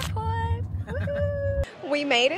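A woman's drawn-out, high sing-song vocal sounds, playful exclamations rather than words, over the steady low rumble of a car cabin. The rumble cuts off suddenly about one and a half seconds in.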